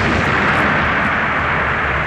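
Stage pyrotechnic jets firing on the field: a sudden rushing blast of noise that holds steady for about two seconds, then cuts off.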